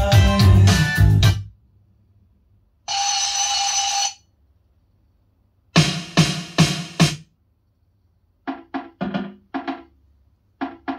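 Recorded pop music with drums played over a Bell Carillon valve amplifier and loudspeakers. The music breaks off about a second and a half in and then comes back in separate bursts with silence between them: a held note about three seconds in, a few heavy drum hits near the middle, and quick short stabs near the end.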